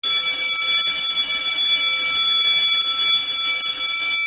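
Electric school bell ringing continuously: a loud, steady metallic ring that starts abruptly and holds for about four seconds.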